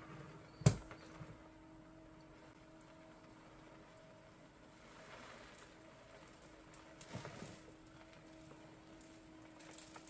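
Litter-Robot 4 globe turning on its motor during an empty cycle, dumping the litter: a faint, steady hum with a thin tone, after one sharp click less than a second in.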